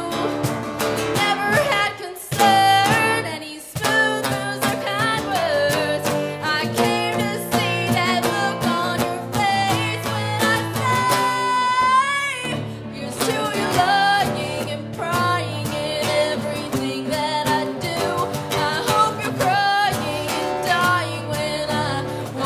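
A woman singing a rock song with acoustic guitar and bass guitar accompaniment. She holds one long note about halfway through.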